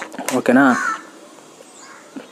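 A man's voice briefly drawing out a single vowel-like syllable in the first second, followed by quiet room tone.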